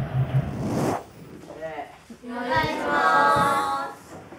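A class of schoolchildren's voices speaking together in unison for about a second and a half in the second half, like a chorused class greeting, after a few brief scattered voices.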